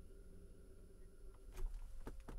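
Quiet low hum with a few faint clicks in the second half: a fingertip tapping and touching a tablet's touchscreen.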